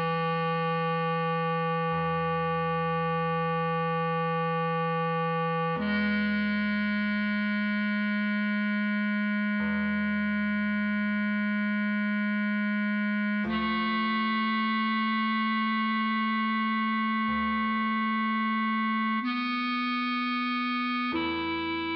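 A bass clarinet plays a slow melody of long held notes, each sustained for several seconds and moving up in pitch a few times. Low accompaniment notes sound under it, struck about every four seconds and fading.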